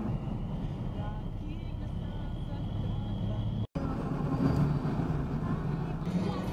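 Steady low rumble of a car's engine and tyres heard from inside the cabin while driving on a highway. The sound cuts out completely for an instant a little past halfway.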